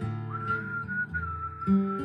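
A person whistling one long, steady note that starts a moment in, over a Taylor acoustic guitar being played.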